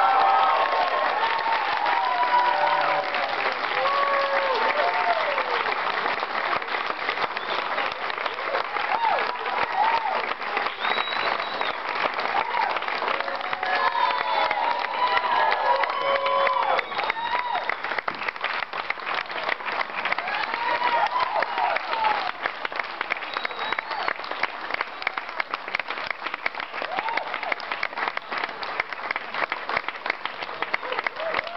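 Large audience applauding at length for a winning auction bid, with voices calling and cheering over the clapping; the applause is loudest at first and eases off a little later on.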